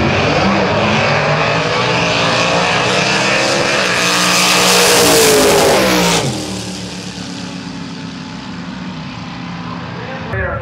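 Two gasser drag cars launching side by side and racing down the strip, their engines revving up through the gears. The engine sound is loud for about six seconds, then drops off suddenly, and the engines are heard distant and quieter as the cars run out toward the far end.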